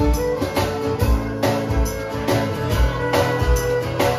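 Live country band playing through a PA: strummed acoustic guitar and fiddle over a steady kick-drum beat, about two beats a second.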